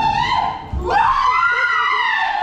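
A woman screaming in fright at a sudden scare: a short high scream, then one long high-pitched scream that rises and falls.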